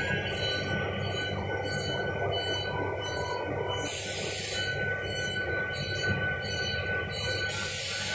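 Industrial book-binding machine running: a steady mechanical hum with high whining tones, and a sharp hiss that cuts in twice, about four seconds in and again near the end.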